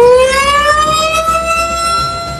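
Tsunami warning siren sounding an alert: one wailing tone rising in pitch, then levelling off about halfway through and holding steady.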